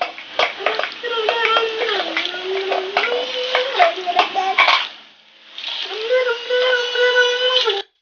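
A spoon stirring thick, oily mango pickle in a large aluminium bowl: wet squelching with frequent clicks and knocks of the spoon against the metal. A sustained wavering tone, like a voice, runs behind it, drops away briefly about five seconds in, and everything cuts off just before the end.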